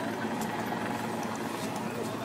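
Busy city street ambience: a steady traffic hum under indistinct crowd voices, with a few faint clicks.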